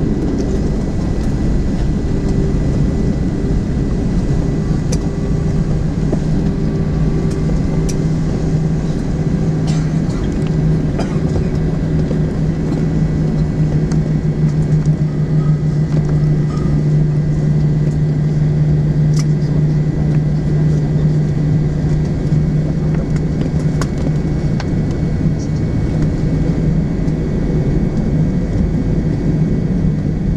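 Airliner cabin noise while taxiing after landing: a steady low rumble from the jet engines at idle and the rolling aircraft. A steady low hum strengthens about five seconds in, with a few faint clicks over it.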